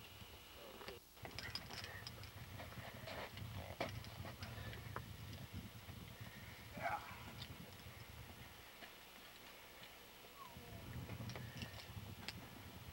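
Faint scattered clicks and rustles of rope and climbing hardware being handled, over a steady low rumble.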